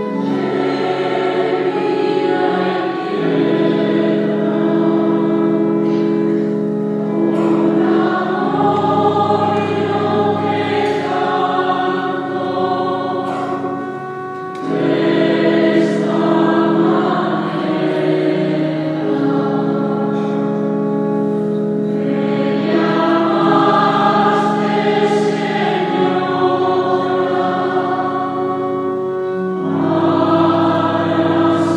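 Mixed choir singing a slow sung prayer in long held chords, in phrases, with a short break about halfway through before the voices come back in.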